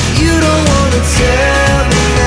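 Background pop-rock song with a sung melody over a steady bass line.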